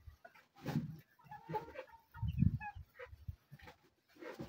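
Chickens clucking softly in short scattered calls, with a few soft low thumps close by.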